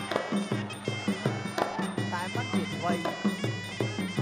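Traditional Kun Khmer ringside music: a reedy sralai oboe holds a high, nasal melody over a quick, steady drum beat, with commentators' voices over it.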